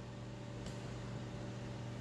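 Steady low hum with faint hiss: room tone, from an appliance or fan running in the room.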